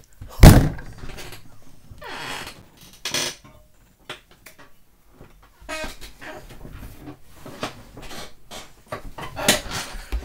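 A loud thump about half a second in, followed by scattered knocks, rustles and handling noises.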